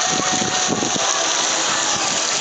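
Steady rushing and splashing of water from a water-park lazy river and its spouting fountains, an even hiss with no break.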